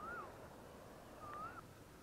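Two short whistled bird calls, each a quick wavering rise and fall, about a second apart, over a faint steady hiss.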